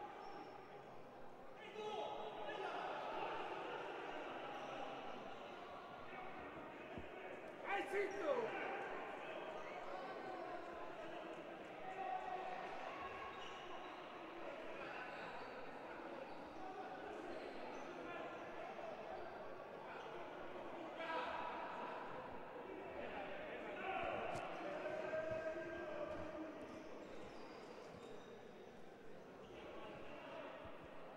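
Echoing sports-hall ambience during a stoppage in a handball match: players' and spectators' voices, with a handball bouncing on the court floor. One louder call, falling in pitch, stands out about eight seconds in.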